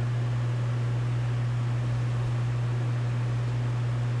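Steady low hum with a constant hiss under it, unchanging throughout.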